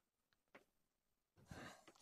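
Near silence: room tone, with a faint breath near the end, just before speech.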